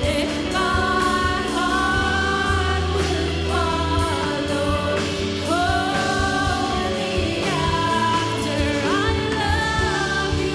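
A live Christian worship band playing a slow song: a woman sings the lead line with backing singers, over electric guitars and a sustained bass, with a steady beat.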